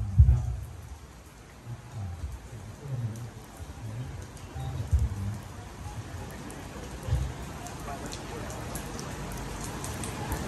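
Light rain falling steadily, with faint fine drops ticking. Low, indistinct voice sounds rise briefly a few times in the first half.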